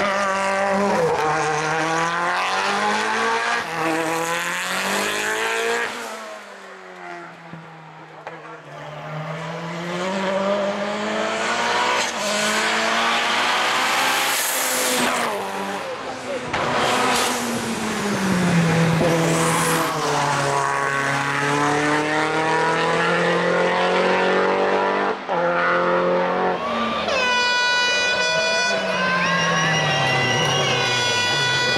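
Lancia Delta Integrale Evo hill-climb race car with a turbocharged four-cylinder engine, accelerating hard and shifting up through the gears. The pitch climbs and drops with each shift. It fades for a few seconds around the middle, then comes back loud and holds a steady high-pitched note near the end.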